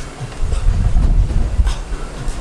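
Low, rumbling wind buffeting on the camera microphone, with a faint click about one and a half seconds in.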